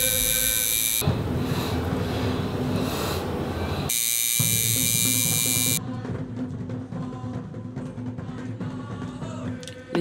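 Electric tattoo machine buzzing steadily, in two spells that cut off abruptly about a second in and just before six seconds in, over background music.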